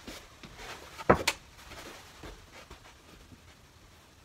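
A stiff cardboard template bumped up against a wooden ceiling while being held in place for a test fit: two sharp knocks close together about a second in, then a few faint taps and handling sounds.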